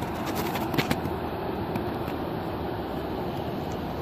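A road vehicle driving by: a steady rush of tyre and engine noise.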